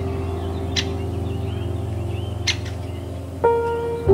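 Calm ambient background music of sustained, held tones, with a new note coming in near the end. Faint bird chirps sit underneath, and two short clicks sound about a second apart in the middle.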